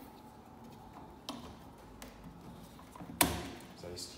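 Light clicks from metal drawer sides being handled, then one sharp click with a dull knock about three seconds in as a drawer side locks onto the drawer front.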